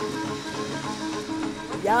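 Background music with steady held notes, and a young man's voice saying a short word near the end.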